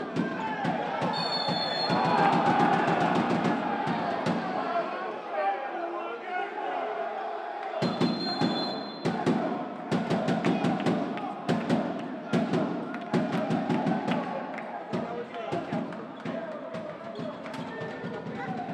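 Handball game sound: crowd noise with fans' drumming and a ball bouncing on the court. Two short referee whistle blasts cut through it, about a second in and again about eight seconds in.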